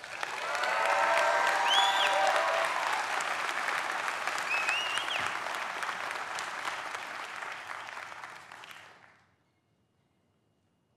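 Audience applauding in a hall, swelling within the first second, with some cheering voices and two short rising whoops, then tapering and dying away about nine seconds in.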